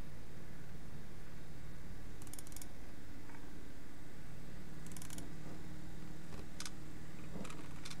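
A few faint computer-mouse clicks, spread out in small clusters, over a steady low hum.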